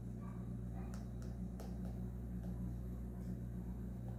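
A steady low electrical hum with a few faint light clicks.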